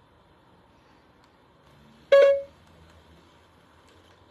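A single short, loud horn-like toot about two seconds in: one bright tone with many overtones, dying away within half a second, over a low steady background.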